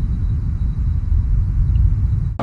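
A loud, deep, steady rumble with almost nothing in the higher range.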